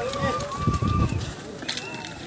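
Men's voices in a rhythmic chant, one short rising-and-falling call repeated about four times a second, over the thud of running footsteps; the chant breaks off a little past a second in.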